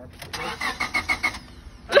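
1997 Honda Civic's four-cylinder engine being cranked by the starter in rapid, even pulses for about a second, then the cranking stops.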